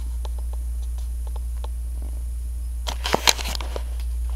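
Movement and handling noise from a handheld camera being carried through a room: soft scattered clicks and taps over a steady low hum, with a few sharper knocks about three seconds in.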